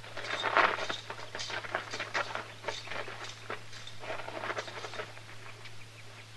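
Radio-drama sound-effect footsteps, several people walking over dirt in an uneven shuffle that thins out near the end. A steady low hum from the old recording runs underneath.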